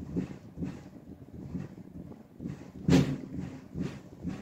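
Bass drum struck softly with a felt beater, feathered in a swing pattern: a run of light thumps about two a second, with one stronger stroke about three seconds in.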